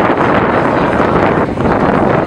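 Wind buffeting the microphone: a loud, steady rushing noise.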